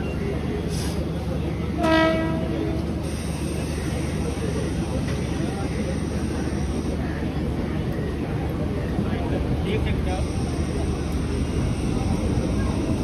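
Mumbai suburban electric local train running, with a steady rumble of wheels on track. About two seconds in, a train horn sounds once, briefly.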